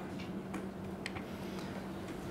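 Quiet room tone with a low steady hum and two faint ticks about half a second apart.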